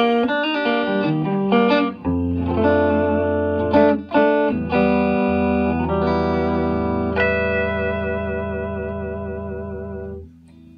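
1963 Gibson Firebird III electric guitar played through a Fender Champ amplifier: a slow passage of chords struck one after another. The last, about seven seconds in, is left to ring and fade away.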